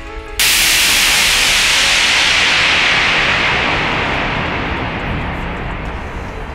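DJ white-noise sweep used as a transition between tracks in a hip-hop mix: the previous track drops out and a loud hiss starts suddenly about half a second in, then slowly fades away over the next five seconds.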